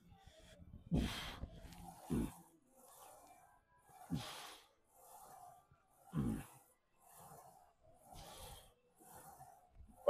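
A man clears his throat and sighs, then breathes hard in quick, even breaths, with a few short voiced exhales. This is effortful breathing through a warm-up set on a leg press.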